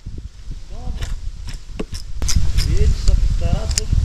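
Low rumbling handling noise and scattered sharp clicks from a spinning rod and reel as a hooked fish is played in, with a few brief low voices.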